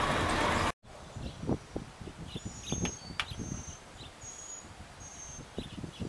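Road and engine noise in a moving vehicle's cab, cut off abruptly under a second in. Then a peacock pecking at its reflection in a car's door panel: a few faint, sharp taps, with small birds chirping briefly in the background.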